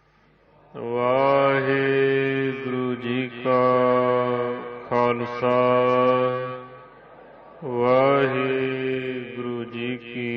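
A man's voice chanting Gurbani verse in long, drawn-out held notes, gliding up into each note. It starts after a brief silence and pauses briefly about seven seconds in.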